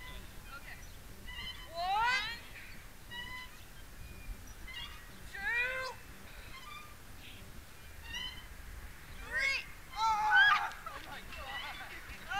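Short, high-pitched squeals and whoops from people on playground swings, a few seconds apart, with the loudest burst of shrieks about ten seconds in as riders jump off.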